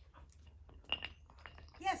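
A sharp metallic clink about a second in, followed by a few lighter clicks: a metal scent article knocking against the paving stones as a border collie puppy noses and picks it up.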